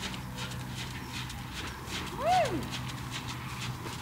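A ridden horse walking on an arena surface, its hooves landing softly and evenly. About two seconds in there is one short call that rises and falls in pitch.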